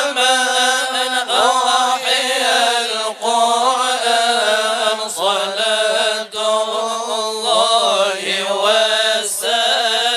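Arabic religious chanting in the style of Quran recitation (tadarus): a voice sings long, ornamented phrases that bend up and down in pitch, with brief breaths between them, over a steady low held note.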